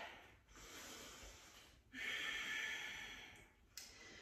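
A person breathing audibly while holding a yoga pose: two long, faint breaths one after the other, the second a little stronger.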